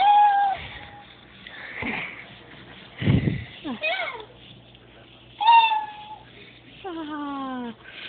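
Robotic toy cat giving electronic meows through its small speaker: a few short meows, then a longer, falling call near the end. There is also a low thump about three seconds in.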